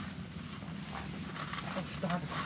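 Goats and sheep feeding on scattered hay, with rustling and chewing sounds throughout. A short bleat starts near the end.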